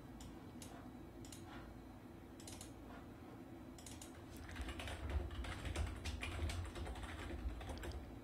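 Faint typing on a computer keyboard as a filename is entered: a few scattered clicks first, then a quick run of keystrokes through the second half.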